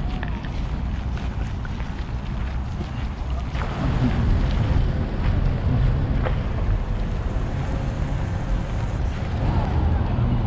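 Wind buffeting the camera's microphone: a steady, uneven low rumble, with faint street and park ambience underneath.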